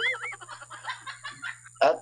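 Laughter: a high, warbling laugh at the start that trails off into faint, quick giggling.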